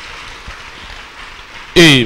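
Congregation clapping, a steady even patter. Near the end a loud voice cuts in suddenly.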